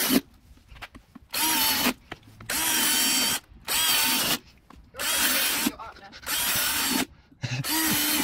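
Cordless drill boring into a pumpkin in about six short bursts of roughly a second each. Its motor whines up at the start of every burst and stops between them, while the bit chews through the pumpkin flesh.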